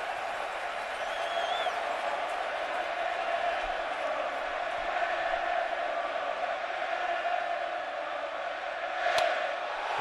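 Packed ballpark crowd chanting "Cue-to" in unison to rattle the pitcher, a steady mass of voices. About nine seconds in comes a sharp crack of the bat meeting the pitch.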